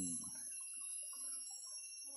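Faint, steady high-pitched drone of insects in tropical forest, with faint scattered sounds alongside.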